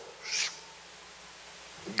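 A man's brief hushing 'shh' into a microphone, followed by quiet room tone.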